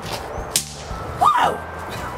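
A bang snap (snap pop) thrown onto concrete goes off once with a sharp crack about half a second in.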